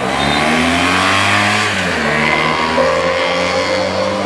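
Motorcycle riding past close by. Its engine note rises, then drops in pitch about halfway through as it goes by.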